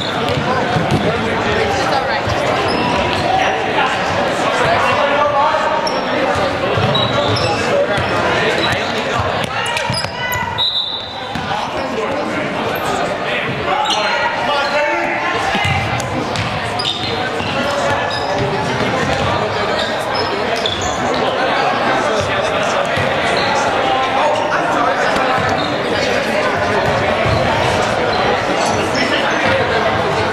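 A handball bouncing on a hardwood gym floor as players dribble and pass, mixed with players' voices calling out, all echoing in a large gymnasium.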